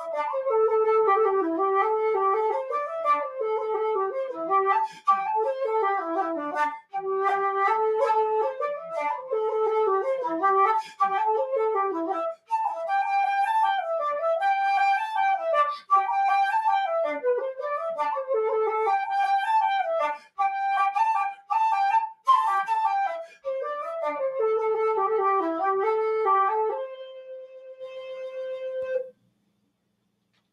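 Irish wooden flute playing a quick reel melody with short breath breaks. The tune ends on one long held note that fades away near the end.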